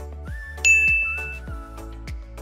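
A single bright ding chime about two-thirds of a second in, ringing for under a second, over soft background music with a steady beat. It is the video's sound-effect cue for switching sides.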